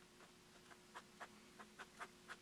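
Faint ballpoint pen strokes on paper over a hard countertop: a handful of short scratches and taps as lines and small boxes are drawn, over a low steady room hum.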